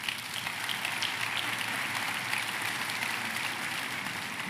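Audience applauding, swelling over the first second, then holding steady before easing off at the very end.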